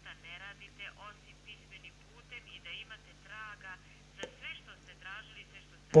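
Faint voice of the person on the other end of a telephone call, thin and narrow-sounding through the phone line, over a steady low hum, with a single click about four seconds in.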